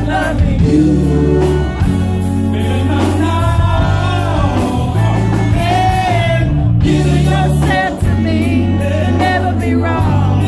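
A live band playing, with a man singing lead over electric guitar and drums and steady low bass notes.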